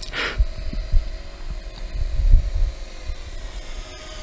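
Small GPS quadcopter (Heliway 913) flying close by, its motors and propellers giving a steady hum, with uneven low wind rumble on the microphone and a brief rush of noise just after the start.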